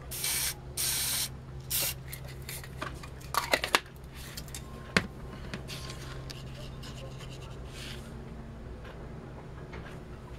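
Aerosol spray-paint can sprayed onto a piece of cardboard: two hissing bursts of about half a second each near the start, then a brief third. Light handling and rubbing follow, with a sharp click about five seconds in, over a steady low hum.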